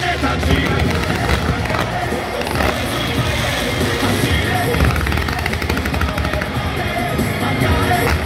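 Loud show music with rapid, dense crackling pops of stadium pyrotechnics (ground fountains and aerial bursts) over it.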